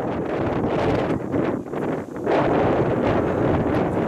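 Wind buffeting the camera microphone in irregular gusts, a loud rumbling rush that surges and dips several times.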